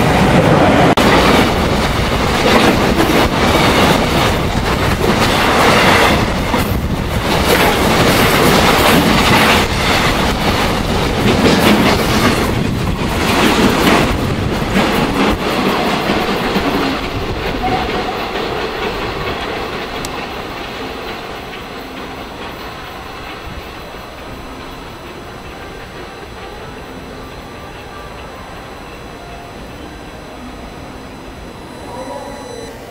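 Freight train of tank wagons hauled by Korail electric locomotive 8580 passing close by, its wheels clattering over the rail joints. The clatter fades after about sixteen seconds as the train draws away.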